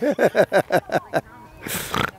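A child laughing in a quick run of short "ha" bursts that fade out about a second in, followed near the end by a short breathy rush, like a sharp intake of breath.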